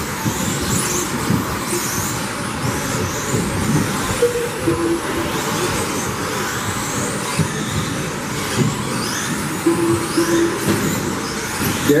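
Several 1/10-scale electric RC buggies racing on a carpet track, the high whine of their 17.5-turn brushless motors rising and falling over and over as they accelerate and brake through the corners.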